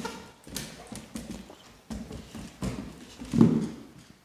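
Two Cane Corsos' claws and paws clicking and knocking on a hardwood floor as they move around, an irregular series of steps with the loudest knock near the end.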